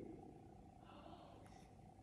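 Near silence: room tone, with the last spoken word dying away at the start and a faint short sound about a second in.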